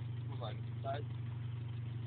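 A car engine idling steadily, a low even drone, with a few brief words spoken over it.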